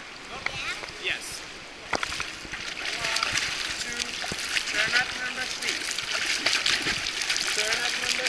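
Water splashing from a child swimming front crawl close by: arm strokes and kicking feet churning the surface. It grows denser and louder from about three seconds in. Faint voices sound underneath.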